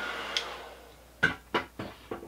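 A handheld heat gun's blower winds down after being switched off, its steady hiss fading away over about a second. Then come three light knocks as tools are handled on the workbench.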